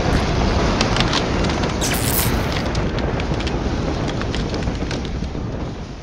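Tornado sound effect: a steady, deep roar of wind with scattered sharp clicks and rattles of flying debris, and a brief bright crash-like burst about two seconds in. It begins to fade near the end.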